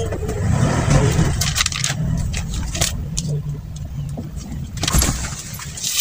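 Paper and a laminated plastic card being handled, with scattered clicks and rustles over a steady low hum.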